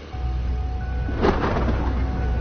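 Suspense film score: a deep rumbling drone with high held tones over it, and a short noisy swoosh-like hit about a second in.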